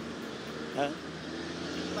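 Steady low outdoor background rumble in a pause between speech, with one short spoken 'É?' a little under a second in.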